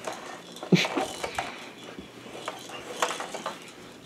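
A few sharp plastic knocks and rattles from a baby's push walker toy being handled and turned around on carpet, the loudest just under a second in.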